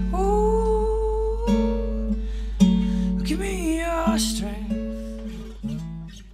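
Acoustic guitar strummed in slow chords, about four strokes, with a sustained, bending melody line held over them; the music fades out toward the end.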